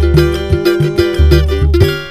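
Live samba with no singing: a cavaquinho strums over deep hand-drum beats and pandeiro jingles in a steady rhythm. The band drops back near the end.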